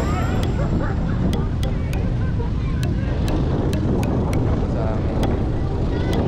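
Wind buffeting the camera microphone in a steady low rumble, with faint voices in the background.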